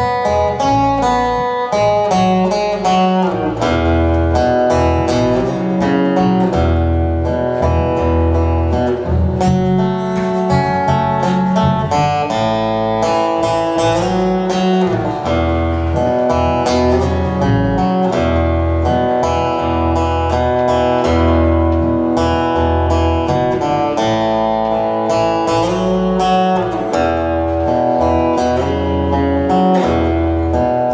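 Acoustic guitar strummed and picked over an upright double bass playing held low notes, live acoustic duo.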